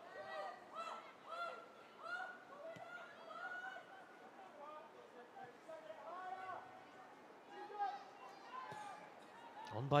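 Football stadium ambience: faint, distant voices calling and shouting on and around the pitch over a low crowd murmur.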